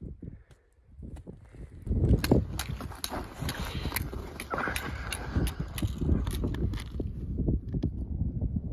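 Irregular crunching steps on snow-covered ice, one after another from about two seconds in, over wind rumbling on the microphone.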